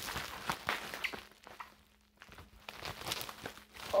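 Bubble wrap packaging being pulled and unwrapped by hand: irregular crinkling and rustling, with a brief lull about halfway through.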